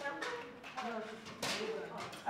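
Indistinct voices of people talking quietly in a large hall, with two brief sharp sounds, one near the start and one about one and a half seconds in.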